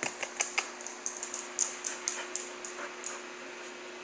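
A dog's claws clicking and tapping on a tiled floor as she gets up and moves about: a quick run of sharp clicks at the start, then scattered taps.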